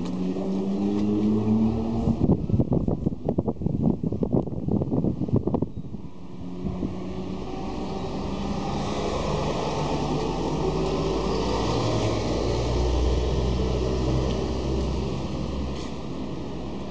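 Motor vehicle engines in road traffic. An engine note rises in pitch at first, a few seconds of rapid clattering follow, then another engine grows louder and eases off near the end.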